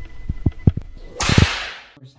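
Several low, sharp thumps, then about a second in a sudden loud hissing whoosh that fades out over about half a second, an edited whip-crack swoosh sound effect.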